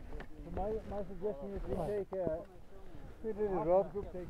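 Indistinct voices of several people chatting, quieter than the nearby talk, with one short click a little over two seconds in.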